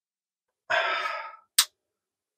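A man's short voiced exhale, like a sigh, under a second long, followed by a single sharp click about one and a half seconds in.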